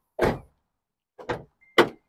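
2019 Honda Ridgeline's dual-action tailgate being worked: a loud clunk about a quarter second in, then two lighter knocks, the last just before the end.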